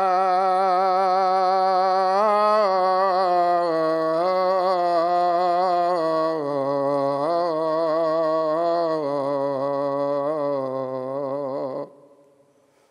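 A man's unaccompanied voice calling the adhan, the Islamic call to prayer. He draws out the end of the phrase "hayya ʿala-ṣ-ṣalāh" in one long, melismatic held note. The pitch wavers in ornaments and steps down about halfway through, and the voice stops just before the end.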